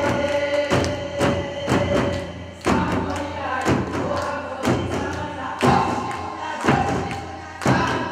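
Korean barrel drums (buk) beaten in a steady rhythm, about two strokes a second with a heavier beat each second, under a group of voices singing a Korean folk song together.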